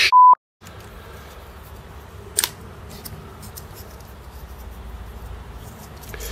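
A short, loud, steady 1 kHz censor bleep right at the start, the second in a row, edited over the end of a swear-laden remark. Then faint room noise with one light click about two and a half seconds in.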